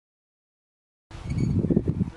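Dead silence, then about a second in a loud, uneven low rumble of wind buffeting the microphone.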